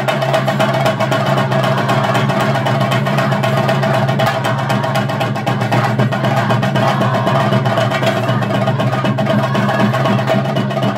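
Chenda drums played in a fast, unbroken stream of strokes as ritual accompaniment to a Theyyam dance, with a steady held tone running beneath the drumming.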